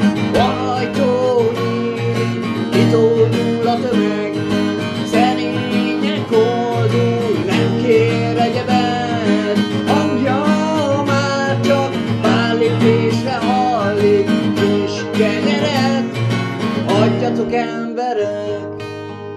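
A man singing to his own strummed acoustic guitar, the strummed chords steady and continuous under a sung melody line.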